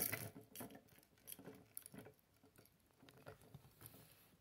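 Lego bricks being handled and fitted together by hand: faint small plastic clicks and rustles, with a brief louder cluster right at the start and scattered ticks after.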